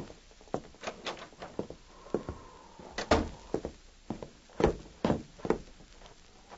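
Radio-drama sound effects of a door opening and shutting with footsteps, heard as a run of separate knocks and thuds. The loudest thumps come about halfway through and near the end.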